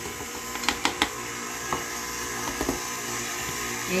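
KitchenAid Artisan stand mixer running steadily, its flat beater mixing flour into creamed butter and sugar for a shortcrust dough. A few sharp clicks come about a second in.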